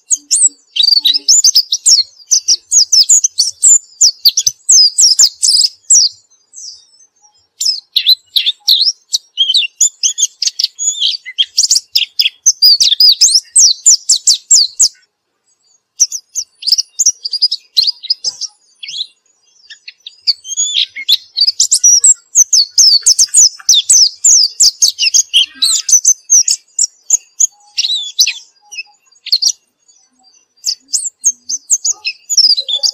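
A caged white-eye (pleci) singing in long, rapid runs of high twittering notes, broken by a few short pauses of a second or so.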